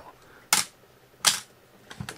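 Two sharp mechanical clicks from a Canon AE-1 35mm SLR camera body, about three quarters of a second apart.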